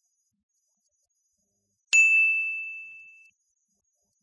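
A single bright ding, like a small bell or chime sound effect, struck once about two seconds in and fading out over about a second and a half.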